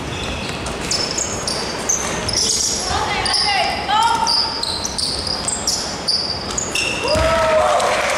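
Basketball shoes squeaking again and again on a hardwood gym floor during play, with players' shouts and a ball bouncing, all echoing in a large hall.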